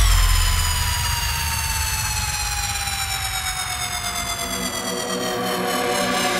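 Electronic dance music breakdown without a beat: a sustained synth tone slides slowly and steadily downward in pitch over a low bass drone, which thins out after about four seconds.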